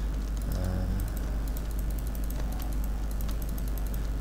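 Irregular small clicks from a computer mouse and keyboard, used while retouching with the clone stamp, over a steady low electrical hum and microphone hiss.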